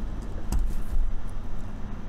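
A steady low rumble in a pause in speech, with a single soft knock about half a second in.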